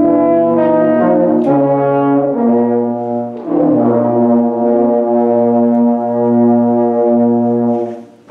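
Small brass ensemble of French horns, trombone and low brass playing an improvised melody over held notes, with several note changes, then holding a chord for about four seconds that the players cut off together near the end.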